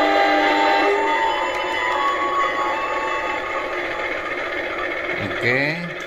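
Recorded diesel locomotive sound effects playing from the built-in speaker of a DC analog model-train controller. A held chord of tones ends about a second in, then a steady engine drone runs on while the HO-scale CC201 model moves. A voice is heard briefly near the end.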